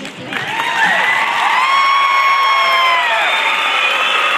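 An audience cheering and screaming with many overlapping high-pitched whoops over applause, breaking out suddenly about half a second in at the end of a dance routine.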